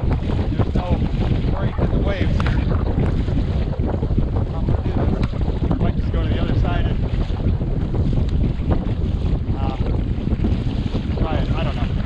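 Strong wind buffeting the microphone, with choppy waves slapping and splashing against a kayak hull as it pushes through rough water.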